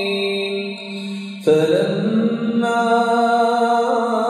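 A man reciting the Quran in Arabic in melodic tajweed style, holding long, ornamented notes. A phrase fades off and a new, louder one begins about one and a half seconds in.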